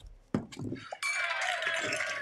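Two people laughing together, the laughter swelling about halfway through.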